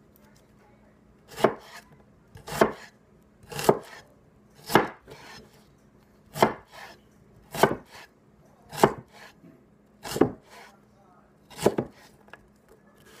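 McCullen Knives S7 Camp Bowie knife, a heavy 8-inch blade a quarter inch thick, chopping a halved onion on a wooden cutting board. There are nine slow, separate cuts, about one every second and a bit, each ending in a knock of the blade on the board.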